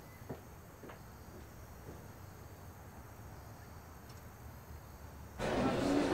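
Quiet room tone with a couple of faint taps in the first second. Near the end it switches suddenly to the murmur of diners chatting in a restaurant.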